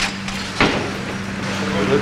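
A steady low hum runs under the kitchen, with one short knock about half a second in.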